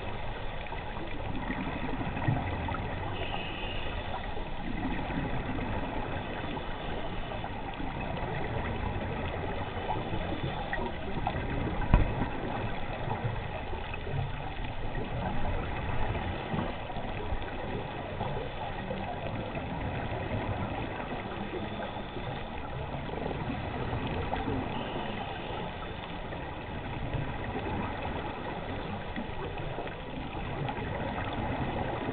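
Muffled underwater ambience heard through a camera's waterproof housing: a steady, dull rushing noise with a couple of brief knocks, about two seconds in and about twelve seconds in.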